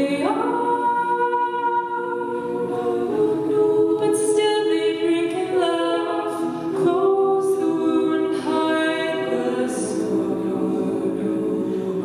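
Women's a cappella group singing: a solo voice carries the melody over sustained backing harmonies that change chord every second or two.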